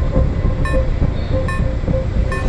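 Film soundtrack: tense score music over a steady low rumble, with a short pulse repeating about every 0.8 seconds.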